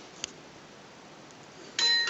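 Alcatel One Touch T'Pop smartphone playing its power-on chime through its small speaker as it boots: several bright, ringing tones start suddenly near the end. Before that only a faint click about a quarter second in.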